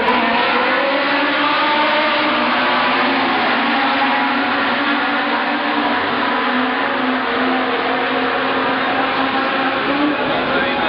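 A field of historic Formula One cars racing past in a pack just after the start, many engines heard at once as one loud, steady mass of engine sound.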